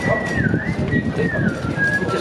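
A high, thin whistling tone that dips and rises in pitch a couple of times, over the steady murmur and footsteps of a busy pedestrian street.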